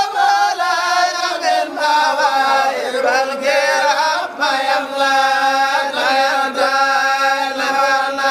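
Zikr, an Islamic devotional chant, sung in long, held melodic phrases with short breaks between them.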